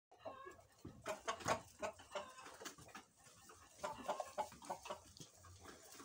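A flock of improved Kienyeji hens clucking with many short calls while feeding, with scattered short taps in between.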